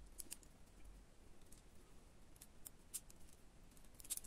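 Near silence with a few faint, scattered clicks of faceted icosahedron beads knocking together as two beads are threaded onto a needle and thread.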